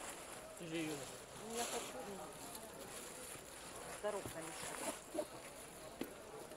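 Faint voices talking in the background, with a few brief crinkles of plastic wrapping as bags are handled.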